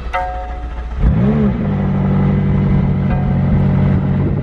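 McLaren 570S Spider's twin-turbo 3.8-litre V8 starting about a second in: the revs flare up and drop back, then it settles into a steady idle.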